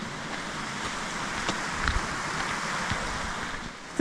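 A steady rushing noise, with a few faint crunches of footsteps on a gravel track and a low bump about halfway through.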